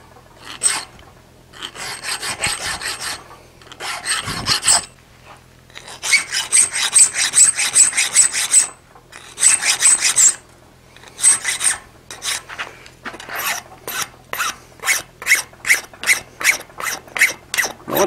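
Hand file rasping across the tips of a forked wrought-iron tongue clamped in a steel bench vise, shaping both tines evenly toward a near point. The strokes come in groups with short pauses, and near the end they turn into short, quick strokes of about three a second.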